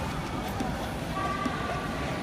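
Steady low background rumble and hiss, with a faint steady high tone coming in about halfway through.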